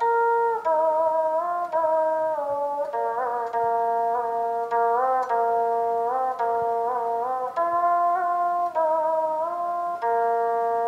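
Single-string zither (duxianqin, the Jing people's đàn bầu) played solo: each plucked note rings on and is bent up and down by the flexible rod, giving sliding, wavering pitches. The tone is clear and pure, almost electric-sounding.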